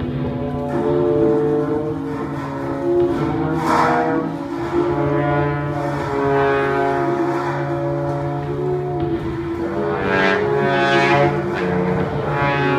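Free-improvising ensemble holding long overlapping notes: a low steady drone under several higher sustained tones that shift in pitch. Brighter swells rise about four seconds in and again near the end.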